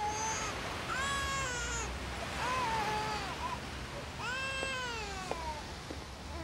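Four long, wailing animal cries, each bending up and then down in pitch, spaced about a second apart.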